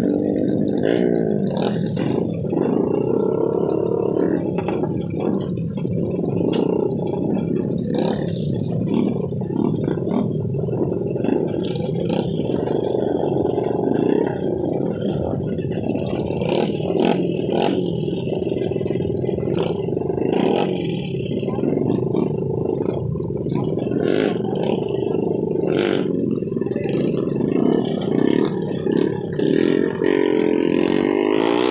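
Small off-road motorcycle engines running at close range, one close engine idling with its pitch rising and falling as the throttle is blipped, with clatters throughout.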